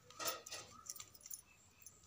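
A few faint, scattered clinks of bangles on a wrist, with light handling of cloth and a measuring tape.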